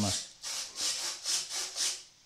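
Small RC servos whirring in short repeated bursts, about three a second, as the transmitter stick is worked back and forth and drives the glider's ailerons and flaps in and out of crow braking.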